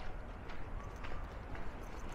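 Footsteps of a person walking on a paved lakeside path, about two steps a second, over a steady low rumble.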